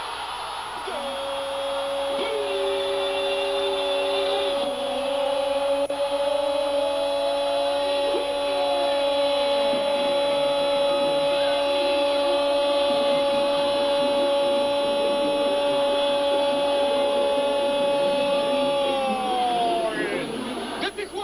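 A television commentator's single long, held goal cry, one steady pitch for nearly twenty seconds that sags and breaks off near the end, over a stadium crowd cheering a goal.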